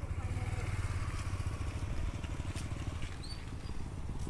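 A motor vehicle engine running steadily at low revs: a low, evenly pulsing rumble.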